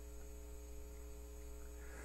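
Faint steady electrical mains hum with a stack of even overtones, picked up in the recording chain during a pause in speech.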